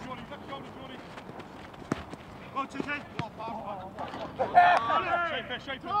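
Footballers shouting to each other on a training pitch, with the shouting loudest from about four seconds in. Before that, in a quieter stretch, come a few sharp knocks of footballs being kicked.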